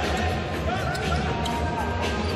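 Basketball arena sound during live play: music over the arena's public-address system with crowd murmur, and a basketball bouncing on the hardwood court.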